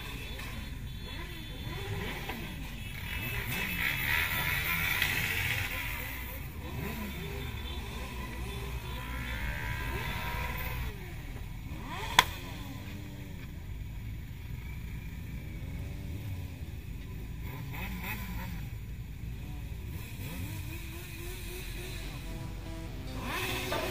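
Several motorcycle engines revving up and down again and again over a steady engine rumble, with one sharp bang about halfway through.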